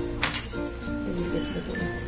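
A metal spoon clinking against a small white bowl, two quick strikes about a quarter second in, over light background music.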